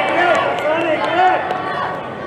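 High-pitched children's voices calling and shouting on the pitch, short rising-and-falling calls without clear words.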